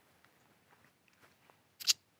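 Near silence, broken near the end by one brief, sharp hiss.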